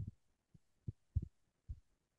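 A few soft, low thumps, about five over two seconds at uneven spacing, with faint background hiss between them.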